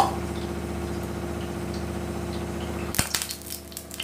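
A steady mechanical hum, like a small motor running. It stops with a sharp click about three seconds in, leaving a quieter stretch with a few faint clinks.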